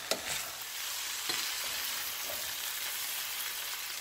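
Ground beef, toasted vermicelli, tomatoes and potatoes sizzling in a pot on the stove with a steady hiss, while a wooden spoon stirs through them, scraping a few times in the first second or so.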